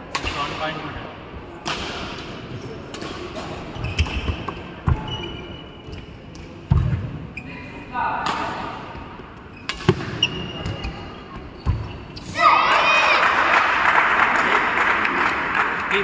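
Badminton rally in an indoor hall: sharp racket strikes on the shuttlecock and low thuds of feet landing on the court. About twelve seconds in, spectators break into loud cheering and shouting that carries on.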